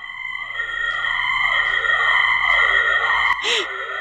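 Eerie electronic cartoon sound effect: steady high tones under a tone that swoops up and down about once a second, like a siren or theremin, swelling in over the first second. A short burst of noise comes near the end.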